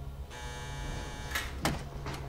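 Door entry buzzer buzzing for about a second, then two sharp clicks as the door's lock releases and the door opens.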